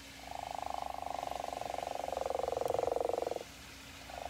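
Recorded call of a Carolina gopher frog played through a phone's speaker: one long, rapidly pulsing call of about three seconds, sinking slightly in pitch toward its end, then stopping abruptly.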